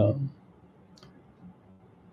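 A man's hesitant "uh" trails off, then a quiet pause with low room tone and a single faint click about a second in.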